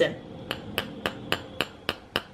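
Metal spoon tapping the bottom of a raw egg's shell in a steady run of light taps, about four a second, six in all, cracking the shell to break the membrane inside before boiling.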